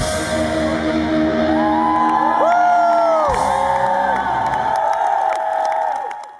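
The song's final chord ringing out on electric guitars after the drums stop, with long held notes bending up and down. A crowd cheers and whoops over it.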